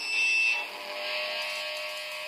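An acoustic guitar chord ringing on and slowly fading, under a steady high hiss, with a thin high tone during the first half second.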